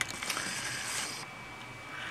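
Handling noise: a sharp click, then about a second of soft rustling as the camera is touched and reframed.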